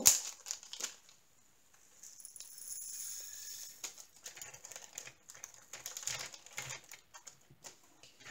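Flat-topped plastic rhinestone diamond-painting drills being poured from a plastic baggie into a small round storage container. A sharp click comes at the very start, then scattered light clicks and rattles of the little gems, with crinkling of the plastic bag.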